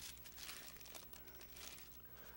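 Faint rustle of thin Bible pages being handled and turned.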